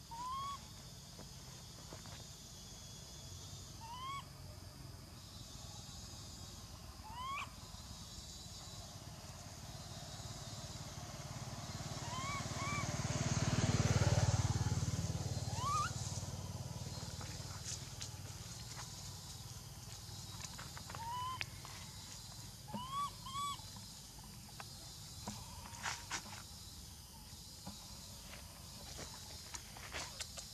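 Short rising animal calls, each about a third of a second long, come about ten times, sometimes in quick pairs or threes. A low rumble swells and fades in the middle.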